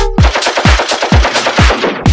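Break in a bass-house track: a rapid rattle of machine-gun fire over a kick drum beating about twice a second, with the bass line dropped out.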